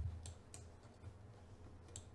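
A few faint, sharp clicks over a low, steady room hum, like a computer mouse being worked to move the on-screen view.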